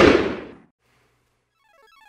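The tail of a loud bang sound effect dying away over about half a second, then near silence, with a faint rising run of short notes near the end.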